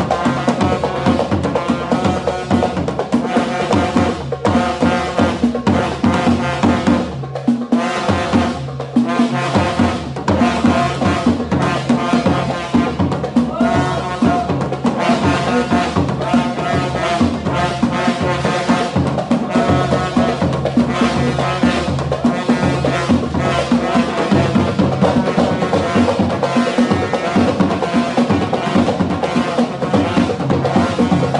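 Dakka Marrakchia ensemble playing: drums and hand percussion beat a driving rhythm while men chant in unison.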